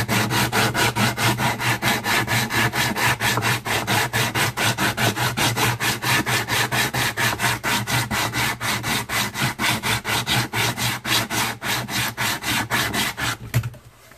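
Hand sanding block with 60-grit sandpaper rubbed rapidly back and forth along the edge of a wooden board, about five strokes a second, wearing down the deep gouges left by a file. The strokes stop shortly before the end.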